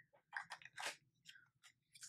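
Faint handling of a lipstick and its packaging: a few soft, brief clicks and rustles in near quiet.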